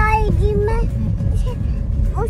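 A toddler's high sing-song voice in the first second, over the steady low rumble of a car driving, heard from inside the cabin.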